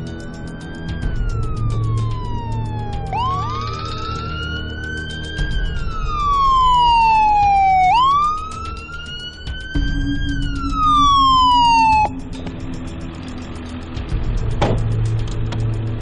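Ambulance siren wailing in slow rising and falling sweeps of about four to five seconds each, then cutting off suddenly about three-quarters of the way through. A single short knock follows near the end.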